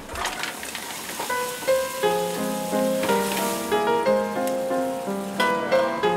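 Garlic and cherry tomatoes sizzling in oil in a pan on a gas burner. Background music with held, steady notes comes in about two seconds in and rises above the sizzle.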